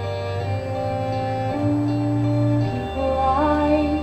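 A woman singing slow, held notes of a musical-theatre ballad over a sustained keyboard accompaniment.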